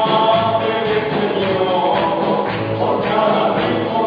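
Live church praise music: a group of voices singing a gospel song together with a band of electric and acoustic guitars, steady and unbroken.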